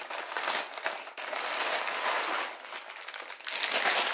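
Black plastic postal mailer crinkling as it is opened by hand, with a clear plastic bag of contents slid out of it: an uneven run of plastic rustling and crackling.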